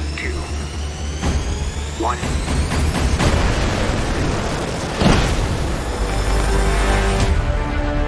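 Trailer soundtrack with music under fighter-jet engines spooling up: a rising whine and a growing rush of jet noise. A loud boom comes about five seconds in.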